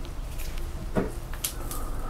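A few light clicks and knocks of handling: a small digital scale's button pressed to switch it on and a plastic tub of sodium hydroxide picked up from the bench, over a steady low hum.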